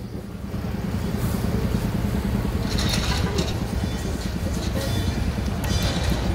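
San Francisco Muni 5300, a heritage electric trolleybus, pulling away from the curb and driving off: a low steady rumble that builds in the first second, over street noise.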